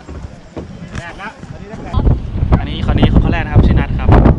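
Wind buffeting the microphone and the low rumble of riding in the open bed of a moving pickup truck, starting about halfway through and much louder than what comes before, with people talking over it.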